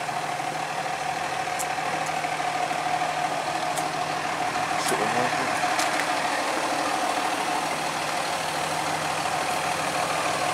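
Fire engine idling with a steady drone and a held tone, with a few faint clicks in the first half.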